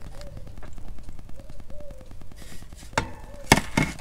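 Handling of a hard plastic autopilot housing: faint handling noise, then two sharp knocks about half a second apart near the end as the tillerpilot's grey plastic top cover is set down on the workbench.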